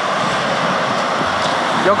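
Small lake waves breaking and washing up on a sandy shore, a steady rush.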